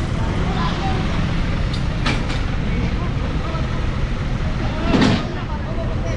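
Flatbed tow truck's engine running at idle, a steady low rumble, with a few short clicks about two seconds in and a brief louder burst of noise about five seconds in.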